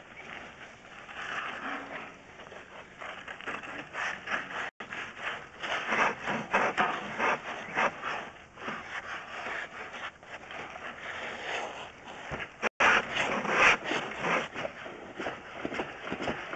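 Irregular scraping and rubbing as a drain inspection camera on its push rod is fed along a pipe. The sound cuts out completely for an instant twice.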